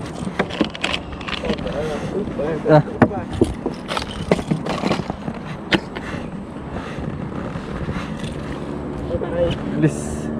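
Plastic tackle box and lures being handled in a boat: a run of sharp clicks and knocks, thickest in the first six seconds, over a steady low rumble.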